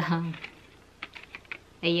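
A few quick light clicks and taps of a plastic blister pack being handled and turned over in the hands, about a second in.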